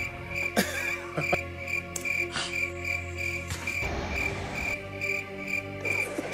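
Crickets chirping in an even pulse, about three chirps a second, over faint steady music tones.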